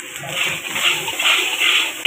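Steel ladle scraping and tossing fried rice around a large iron wok, in quick repeated strokes a little over two a second.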